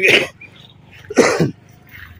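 Two short coughs from a man, about a second apart.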